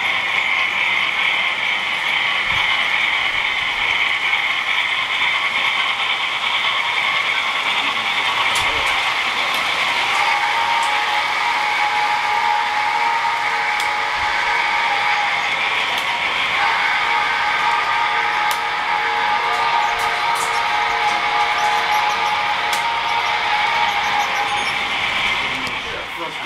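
Model railroad trains running on the layout, a steady whir of motors and wheels on the track, with an indistinct murmur of voices in the room. A steady higher tone joins about ten seconds in.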